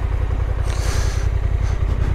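Honda NT1100's parallel-twin engine running at low revs with a steady, fast pulse, the bike moving slowly. There is a brief hiss near the middle.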